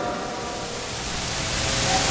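Steady hiss with a faint hum underneath, growing louder toward the end.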